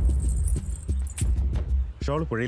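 A light metallic jingle over a loud, steady low rumble.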